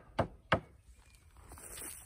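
Hammer driving a nail into an old wooden pallet board: two quick strikes about a third of a second apart, ending a steady run of blows, then it stops. A faint rustle follows near the end.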